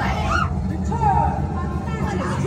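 Haunted-house ambient sound: a loud, steady low rumble with indistinct voices and a short falling wail about a second in.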